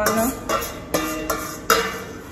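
Background music with plucked, guitar-like notes. A few sharp clinks of metal on a stainless steel bowl can be heard over it as coconut milk is scraped out into the pan.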